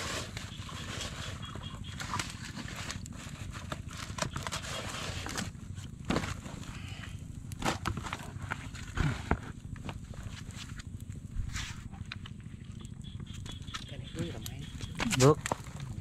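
Quiet outdoor background with a few scattered light knocks and rustles from food and banana leaves being handled, faint voices in the background, and a man speaking near the end.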